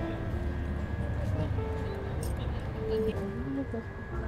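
Steady low rumble of outdoor background noise, with faint background music: a few soft held notes.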